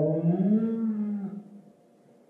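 A man's drawn-out hesitation vowel, a long 'ähm', rising slightly in pitch and held for about a second and a half before it fades to room tone.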